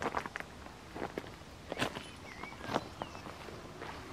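Footsteps on dry grass and stony ground: a handful of irregular crunching steps, the loudest two near the middle and about three quarters of the way in.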